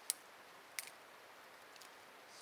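Small dry twigs snapping as they are broken off by hand for fire kindling: two short, sharp snaps under a second apart.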